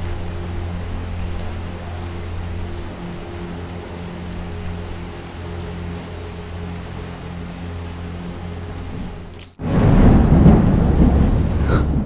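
Steady rain falling, with a low held tone underneath. About nine and a half seconds in, after a sudden break, a loud crash of thunder rumbles on to the end.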